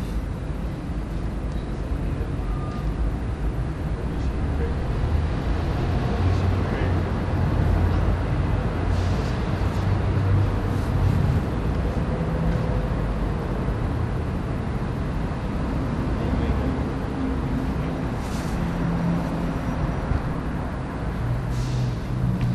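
Steady low rumble of a car running, heard from inside the cabin, with road and traffic noise around it.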